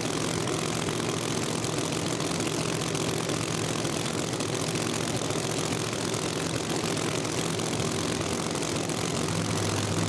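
Drag race car engine running at a steady idle, holding one pitch throughout; a second, deeper drone joins near the end.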